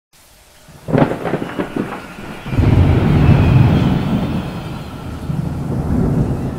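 Thunder: a sharp crackling clap about a second in, then a long, deep rolling rumble from about two and a half seconds that slowly dies away.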